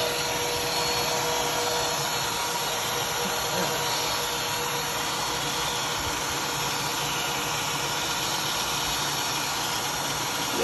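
Upright bagless vacuum cleaner running steadily, drawing air through its hose. A faint whistle fades out about two seconds in.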